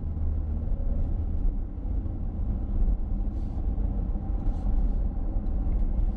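Steady low road and tyre rumble inside the cabin of a moving Mercedes-Benz EQC 400 electric SUV.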